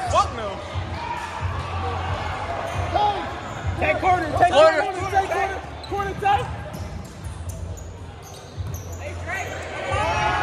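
A basketball dribbled on a hardwood gym floor during a game, in a large echoing hall. Spectators shout over it, loudest about halfway through.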